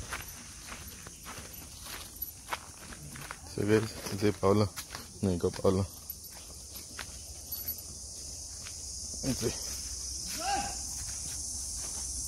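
Footsteps crunching along a dirt path, evenly spaced, over a steady high-pitched insect chorus that grows a little toward the end. A few short spoken words come in about halfway through.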